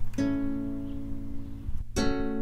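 Ukulele chord strummed just after the start and left to ring, slowly fading, with the next chord struck at the end: an instrumental gap in a sung ukulele song.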